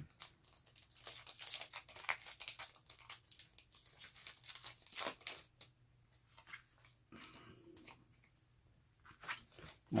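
Pokémon TCG booster pack wrapper being torn open and crinkled by hand: many quick crackling tears for about five seconds, then quieter handling of the cards inside.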